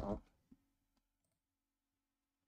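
A sharp click about half a second in and a much fainter click about a second in, from working a computer, over near silence with a faint steady hum.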